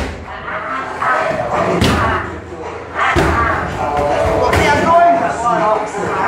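Strikes landing on leather Thai pads (Muay Thai pad work): four sharp slapping thuds about a second and a half apart.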